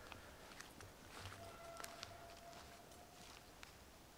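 Faint scattered crackles and ticks of movement in forest undergrowth, with a faint steady tone held for about two seconds midway.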